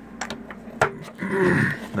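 A few clicks and knocks from handling the opened server power supply's metal chassis, the sharpest a little under a second in, then a short scrape near the end.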